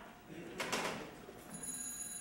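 A telephone ringing on stage: a brief clatter less than a second in, then a thin, steady, high ringing tone that starts about a second and a half in.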